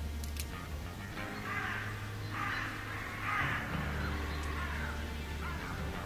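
Crows cawing several times over low, steady background music.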